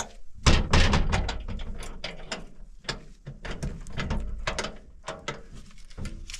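A clatter of irregular knocks and clicks, the loudest a heavy thump about half a second in.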